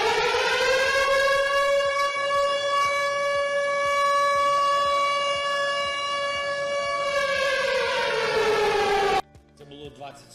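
Air-raid siren wailing on one steady pitch, its warning of an air attack now a familiar sound in Ukrainian cities. It falls in pitch from about seven seconds in and cuts off suddenly about nine seconds in.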